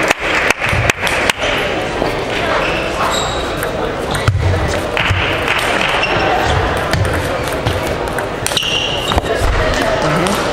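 Sharp clicks of celluloid table tennis balls striking bats and tables, several in quick succession in the first second and a half and single ones later. Under them runs the steady din of a busy sports hall, with voices and play at other tables.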